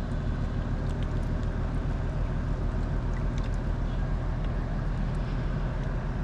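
Steady low drone of a Rhine cargo barge's diesel engine, an even, unchanging hum.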